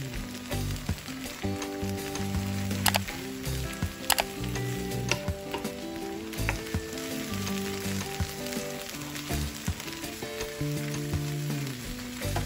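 A wooden spatula stirring and scraping a green gram filling in a non-stick pan on the heat, with a light sizzle and a few sharp taps against the pan. Background music of held, stepping notes plays over it.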